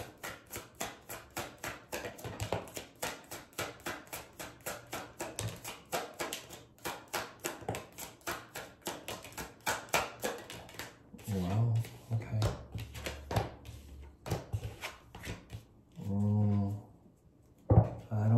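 A deck of tarot cards shuffled by hand, a rapid run of light card slaps at about seven a second that thins out after about eleven seconds. A man's short wordless vocal sounds come twice in the second half.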